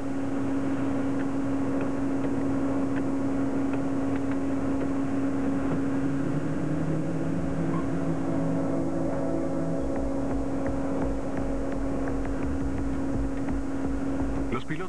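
Steady mechanical hum holding one constant drone note. A lower tone joins for a few seconds midway, and a deeper rumble comes in during the second half.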